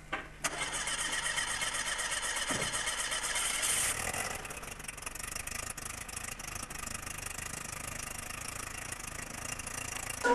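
An engine starts about half a second in, runs faster and louder for the first few seconds, then settles to a steady idle.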